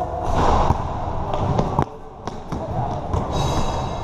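Basketball bouncing on a hard court, with several sharp bounces in the first half or so, over the shouts of players.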